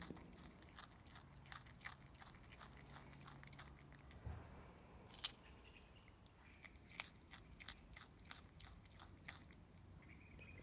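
Common brushtail possum chewing a piece of raw carrot held in its forepaw: quiet, irregular crunching bites, with a few sharper crunches about halfway through.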